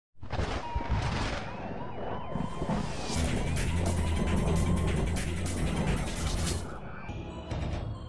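Produced intro sting of dramatic music with a police siren wailing through it, building to a loud, noisy stretch with heavy bass in the middle. It settles into sustained music tones near the end.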